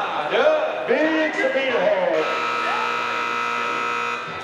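Rodeo arena buzzer sounding one steady, even tone for about two seconds, starting about halfway in: the signal that the eight-second bronc ride is over. Men's voices and shouts come before it.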